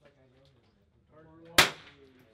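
A single .22LR rimfire rifle shot, sharp and loud, fired about one and a half seconds in, with a short ringing tail. Low voices murmur underneath.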